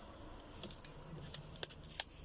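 Faint scattered light clicks and rustles of hand handling inside a car's cabin; no engine is running.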